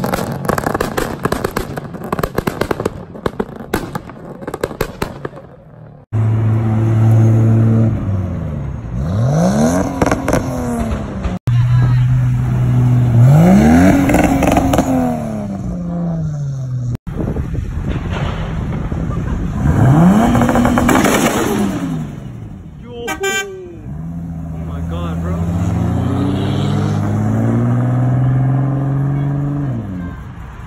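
A series of tuned car engines at a car meet. First comes a rapid string of exhaust pops and cracks, typical of a 2-step launch limiter. Then engines idle and rev in single rising-and-falling blips, with a Toyota Supra among them. Near the end one car accelerates away through climbing revs.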